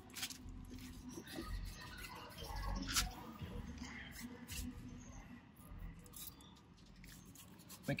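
A stiff-bristled Race Glaze detailing brush scrubbing tire dressing into the rubber sidewall of a car tire in short, scratchy strokes, working it into rubber that is still dry. A sharper click comes about three seconds in.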